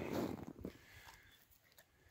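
Near silence: quiet outdoor ambience with a faint click near the end.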